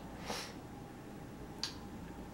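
Quiet room tone with two brief faint clicks, one about a third of a second in and a sharper one near the end.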